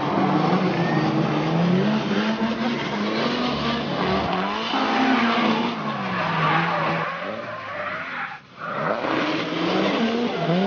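Electric motors of 1/10-scale RC drift cars whining, their pitch rising and falling with the throttle through the drifts, over the hiss of the tyres sliding on the track. The sound briefly drops out about eight and a half seconds in.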